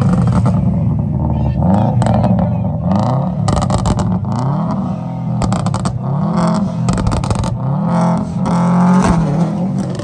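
Subaru Impreza flat-four engine with an aftermarket exhaust revved hard over and over, its pitch climbing and falling about once a second, with sharp cracks in between. Near the end the car is spinning its wheels in a burnout.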